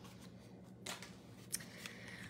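Faint handling of a small punched cardstock hexagon as it is picked up off the craft mat: a few soft, brief paper ticks and rustles about a second in and again near the end.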